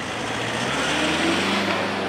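A motor vehicle's engine running and passing close, its sound swelling to a peak midway and then easing, with a slight rise in pitch.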